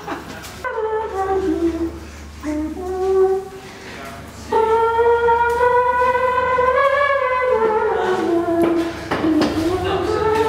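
Wordless singing: a slow melody of gliding, held notes, the longest held for about three seconds from the middle of the stretch, over a faint low hum at the start.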